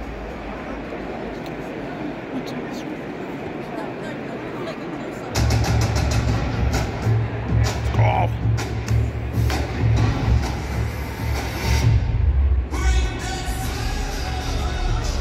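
Crowd noise in a hockey arena. About five seconds in, loud bass-heavy music with a pounding beat starts over the arena PA for the pregame team introduction.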